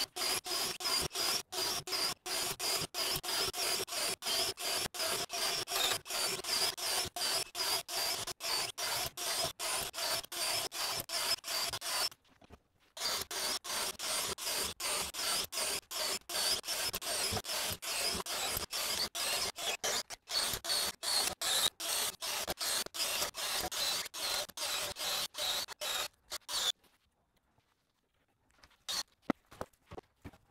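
Hercules HC91K1 cordless compact drill in its low-speed, high-torque first gear, boring holes through a wooden board with a spiral wood bit. Its motor whine holds a steady pitch and is broken into rapid even pulses, about four a second. There is a short break about 12 seconds in, and the drilling stops a few seconds before the end.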